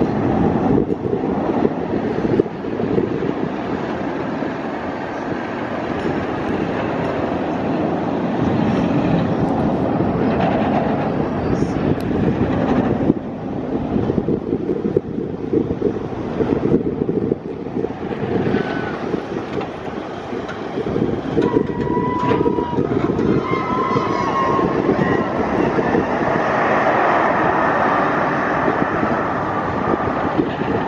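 Bolliger & Mabillard stand-up roller coaster train running through its steel track layout: a continuous rumbling roar of wheels on steel rails with a rattling texture. A few short higher tones come through past the middle.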